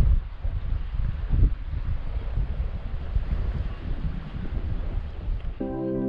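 Wind buffeting the microphone in irregular gusts over open water, a low rumbling rush. Just before the end, soft ambient keyboard music begins.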